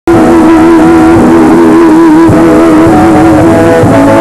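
A woman singing a long held note with a wavering vibrato in a pop duet, with instrumental backing; the sound cuts in abruptly at the start.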